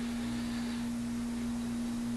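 A steady low hum on one unchanging pitch, over faint background hiss.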